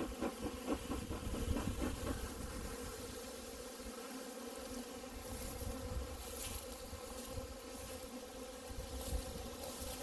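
A honeybee swarm buzzing steadily in the open air. In the first two seconds it is joined by a quick run of footsteps rustling through tall grass.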